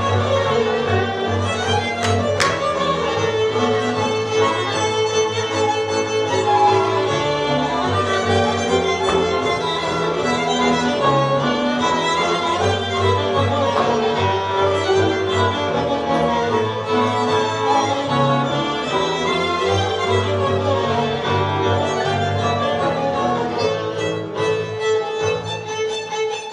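Live Hungarian folk band of violins and double bass playing Baranya folk dance music, the fiddles carrying the tune over a steady bass line.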